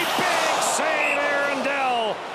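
Hockey play-by-play commentator shouting a long, excited call over a loud arena crowd cheering a home-team chance in front of the net.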